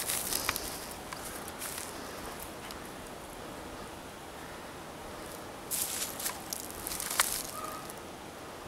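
Footsteps and rustling in grass and undergrowth, with a few louder rustles about six and seven seconds in. A brief faint call is heard near the end.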